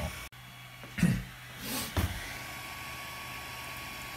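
Steady low hum of the powered, idle Ender 3 Pro 3D printer's cooling fans. Short knocks and rustles of handling about a second in and again near two seconds.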